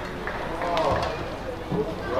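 Badminton shoes squeaking on the court mat as the players move during a rally, several short bending squeaks around the middle, over indoor hall noise.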